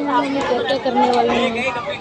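Voices of several people talking on a crowded platform, overlapping chatter.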